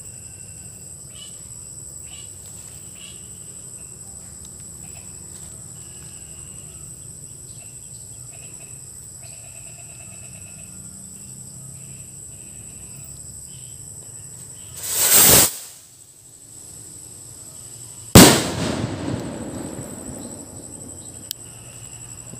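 Insects chirping steadily, then about fifteen seconds in a kwitis lifter rocket takes off with a short rising whoosh. About three seconds later the Mr. Milk firecracker it carries goes off with a loud bang that dies away over a couple of seconds.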